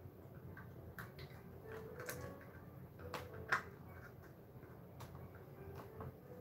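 Light clicks and taps of tarot cards being handled, a few scattered ticks with the sharpest about three and a half seconds in, against a quiet room.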